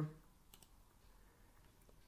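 Faint clicks of a computer mouse button, one about half a second in and another near the end, over near-silent room tone.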